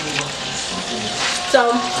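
Chicken pieces browning in a hot pan, a steady sizzle.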